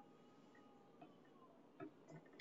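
Near silence with two faint clicks, one about a second in and a slightly stronger one near the end.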